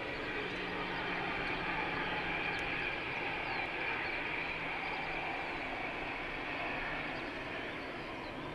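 Jet engines of a four-engine Airbus A380 airliner on landing, heard as a steady rushing noise that swells a little through touchdown and eases off near the end as the aircraft rolls away down the runway.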